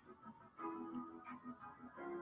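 Faint background music from an animated presentation template's preview, a run of short repeated notes over a held tone.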